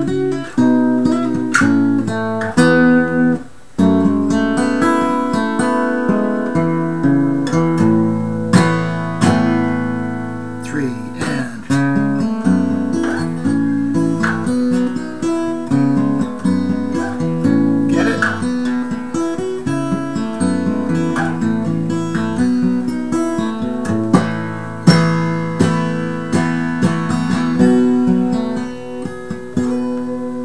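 Capoed acoustic guitar in DADGAD tuning, strummed and picked through a chord progression with ringing open strings. It plays steadily, with a short break about three and a half seconds in.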